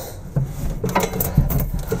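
Hands unclipping a ribbon cable in its plastic covering inside a 3D printer's metal frame: a few short clicks and rattles of plastic on sheet metal.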